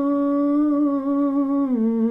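A man humming one long unaccompanied note with a slight waver, stepping down to a lower note near the end.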